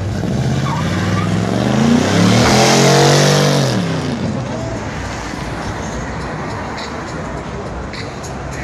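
A car engine revving hard as it accelerates past close by, with tyres spinning, loudest about three seconds in and then fading away.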